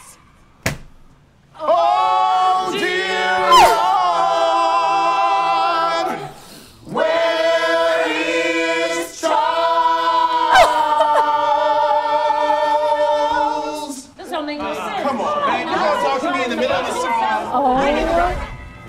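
Gospel church choir singing a cappella, several voices together on long held notes with vibrato, in two phrases with a short break about six seconds in. Near the end the voices turn into a jumble of quicker, overlapping lines.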